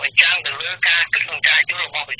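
Speech only: a voice reading Khmer radio news without pause, thin and tinny like a telephone line.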